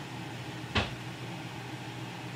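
A single short thump of handling noise about three-quarters of a second in, over a steady low hum.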